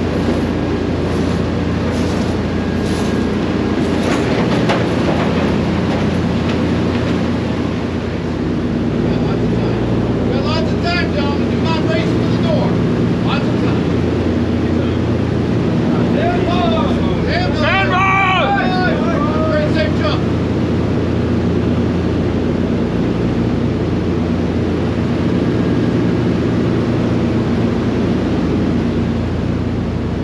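Steady, loud drone of a C-47 Dakota's twin radial engines, heard from inside the cabin with the jump door open.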